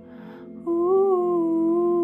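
A woman draws an audible breath, then about two-thirds of a second in sings a long held note that wavers up and down in pitch before settling steady. The note sits over a soft sustained accompaniment.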